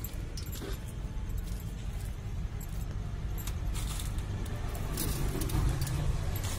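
Street-stall ambience: a steady low traffic rumble with scattered light metallic clinks and jingles, more of them near the end.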